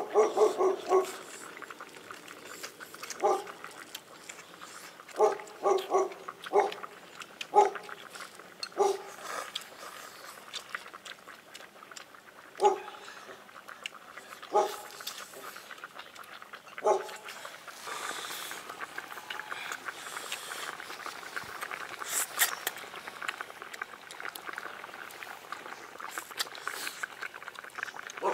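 A dog barking: a quick run of four or five barks in the first second, then single barks every second or two, stopping after about 17 seconds, after which only a soft hiss remains.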